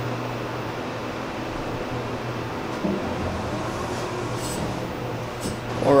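Elevator car running between floors: a steady low hum with a soft hiss inside the cab.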